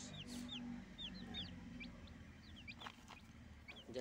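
Chicks about two weeks old peeping in a group: many short, high peeps, several a second, each falling slightly in pitch.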